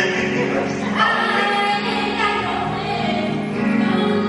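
A song being sung over musical accompaniment, the voices held and moving in pitch without a break.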